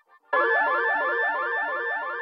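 Electronic background music: after a brief gap, a synth phrase starts about a third of a second in, with a held high note over a figure that repeats about three times a second.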